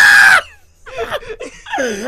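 A person's loud scream lasting about half a second, followed by quieter vocal sounds that slide down in pitch.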